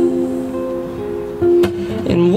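Acoustic guitar played solo, its chord ringing on, with a fresh strum about a second and a half in.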